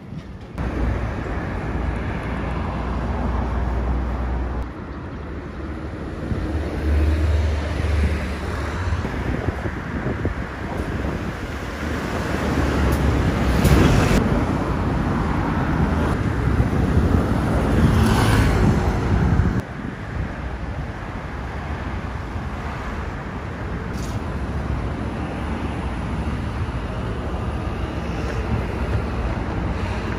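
City street traffic, a steady hum of passing cars with two louder swells as vehicles go by near the middle, then drops suddenly to a lower hum.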